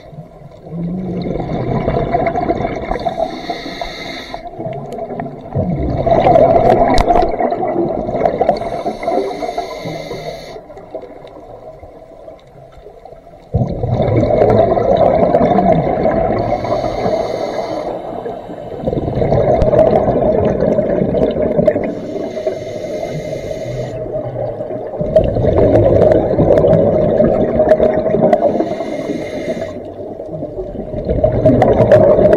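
A scuba diver breathing through a regulator underwater: a short hiss of each inhale through the demand valve, then a loud gurgling rush of exhaust bubbles. The breaths repeat slowly, one every five or six seconds.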